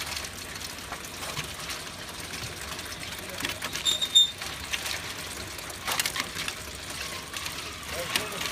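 Motor-driven stainless mesh fish conveyor running with a steady rattle, with occasional knocks as red snapper are tipped onto it and slide down. Two short high beeps come about four seconds in.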